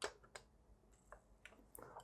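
Faint clicks and light taps of a USB cable plug being pushed into the socket on the base of a Golden Snitch lamp, a sharper click at the very start and a few softer ones after.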